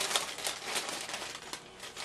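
Parchment paper crinkling and rustling in a run of small, irregular crackles as hot cookies are moved off a baking sheet.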